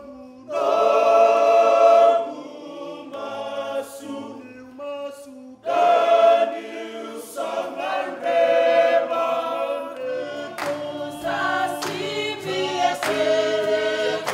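A Fijian group of men's voices singing in close harmony, with long held chords. In the last few seconds, sharp hand-claps come in with the singing.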